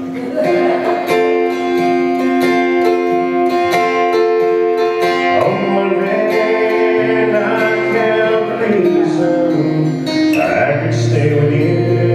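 Steel-string acoustic guitar strummed in a country tune, with a man singing along.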